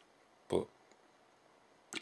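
One short vocal sound from a man about half a second in, then quiet room tone, with a brief click near the end as his talking resumes.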